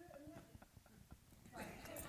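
Near silence: faint voices in the room with a few soft clicks, then louder murmuring from about one and a half seconds in.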